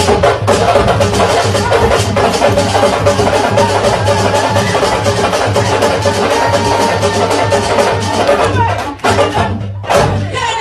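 Fast, dense drumming with a steady beat: the sabar drum rhythm for a lëmbël dance.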